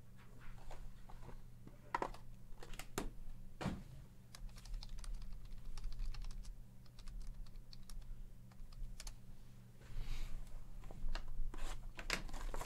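Computer keyboard being typed on in short irregular runs of clicks, over a steady low electrical hum.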